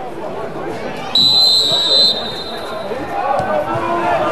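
Referee's whistle blown once for kick-off: a single steady, high-pitched blast about a second long, over the shouts and chatter of players and spectators.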